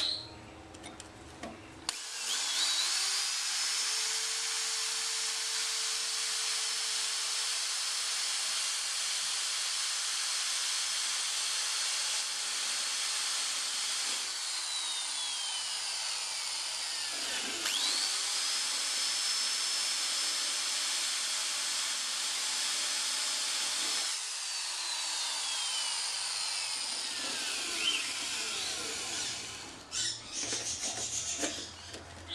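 Corded electric drill boring a pilot hole into a rusted, snapped-off steel hinge stud for a screw extractor. It spins up with a rising whine about two seconds in and runs steadily, winds down around halfway, then starts again and runs until it winds down a few seconds before the end.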